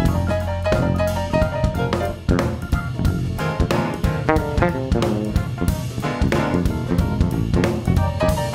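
Live jazz improvisation by a small band: keyboards and piano playing busy chords and runs over a drum kit keeping a steady beat.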